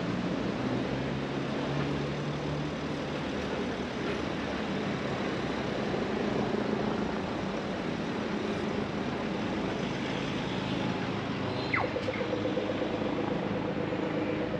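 City street traffic: cars passing and turning over tram tracks with a steady engine hum. Near the end a short falling tone is followed by rapid ticking.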